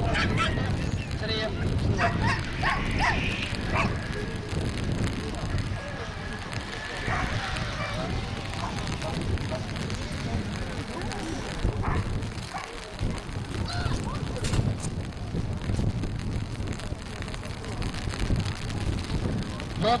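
Dogs yelping and barking in short bursts, mixed with voices, over a steady low rumble.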